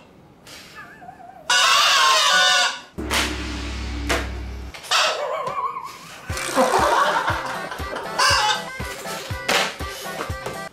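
Party-horn blowouts on a strap-on mouthpiece blown in loud buzzing blasts, the first about a second and a half in and lasting about a second, then repeated short blasts mixed with hard laughter. A deep low drone runs for about a second and a half near the middle.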